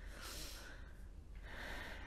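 A man breathing close to the microphone during a pause in his talk: two faint breaths, one in the first half and one near the end.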